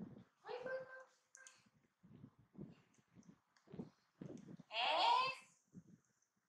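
A baby macaque giving short high-pitched squeals, the loudest and longest about five seconds in, with softer short sounds between.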